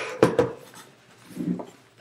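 Two sharp knocks, one at the very start and one about a quarter second later, both fading quickly. A faint low sound follows about one and a half seconds in.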